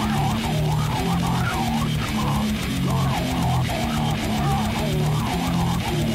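Slam death metal instrumental: heavily distorted guitars playing a chugging low riff over fast, even drums, with a wavering higher guitar line above and no vocals.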